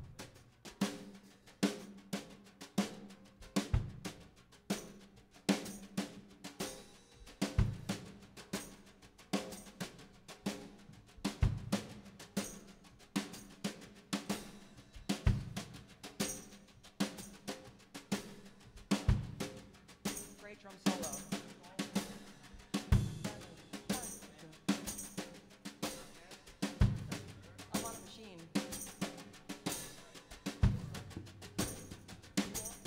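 Live band starting a song's instrumental intro: a drum kit keeps a steady beat with a strong bass-drum accent about every four seconds, under guitars and upright bass.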